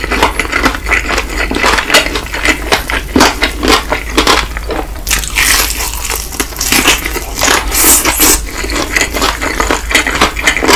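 Close-miked biting and chewing of crispy fried chicken: dense, irregular crunching and crackling of the fried batter, with wet mouth sounds between. The crunching is brightest about halfway through and again near the end.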